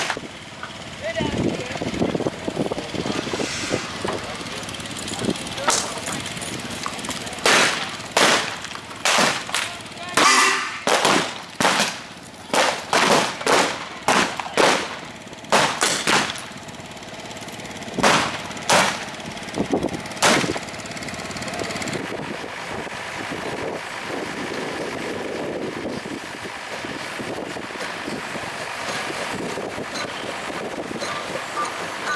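Gunshots from blanks fired in a staged gunfight: about twenty sharp cracks, some single and some in quick runs, from about five seconds in until about twenty seconds in, followed by steady background noise.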